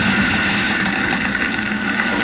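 Radio-drama sound effect of a fire burning, a steady noisy rush, heard through the hiss of an old broadcast recording.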